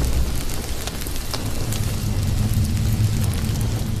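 Fire crackling over a low steady rumble: the sound effect of a blazing magical sword.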